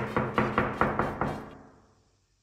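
Knuckles rapping on a wooden hotel room door: a quick even run of about seven knocks, about five a second, over the first second and a half.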